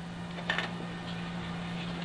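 Room tone: a steady low hum with hiss, and one short click about half a second in.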